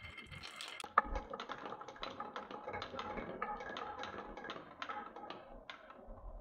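Glass marbles rolling down a wooden marble run into a wooden spiral track, clicking against each other and the wood. A sharp knock about a second in starts a run of rapid clicking that thins out near the end.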